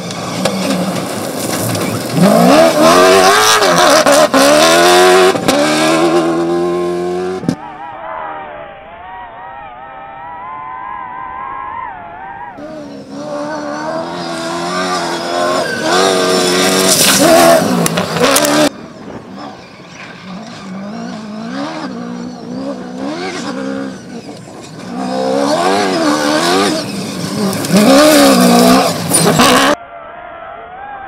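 Toyota Hilux rally-raid truck engine revving hard, its pitch rising and falling through gear changes as it accelerates along a loose gravel track. It comes in several cut-together passes, loudest in the first, middle and last, and duller for a few seconds about a quarter of the way in.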